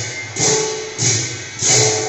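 Live devotional dance music led by khol drums, struck together with ringing metallic clashes on a steady beat of a little under two strokes a second, three strokes in all.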